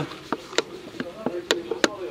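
A handful of sharp clicks or taps close to the microphone, two louder ones about a second and a half in and just before the end, over faint distant voices.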